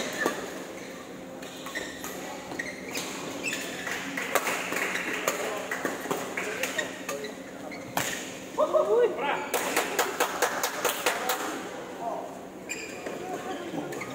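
Badminton rackets hitting a shuttlecock in a doubles rally: sharp smacks every second or so, then a fast run of clicks about two-thirds of the way through. Voices talk across the hall.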